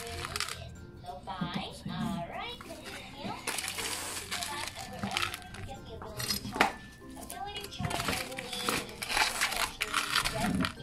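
A child's voice in the background, high and gliding, with rustling handling noise and one sharp click about six and a half seconds in.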